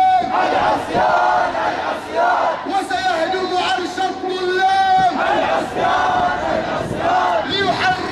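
A crowd of protesters chanting and shouting slogans together in repeated phrases.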